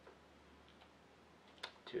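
Near silence: room tone, with one short faint click about a second and a half in, just before a man's voice starts at the very end.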